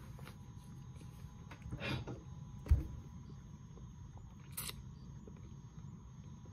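Quiet room tone with a faint steady electrical whine, broken by a few small sounds: a short murmur about two seconds in, a single low thump just before three seconds, and a brief hiss a little later.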